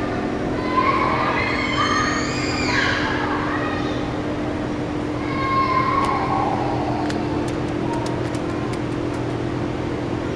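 A steady low hum fills the hall, with faint distant voices in the first few seconds. Over the last three seconds comes a string of light clicks from the keys of an old mechanical adding machine being handled.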